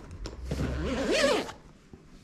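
Zipper of a padded guitar gig bag being pulled, a rasp of about a second that starts about half a second in, its pitch wavering up and down with the speed of the pull.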